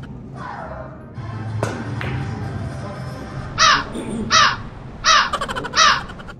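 Two sharp clicks of billiard balls, then four harsh crow caws, each falling in pitch and about 0.7 s apart, laid over the play as a comic sound effect.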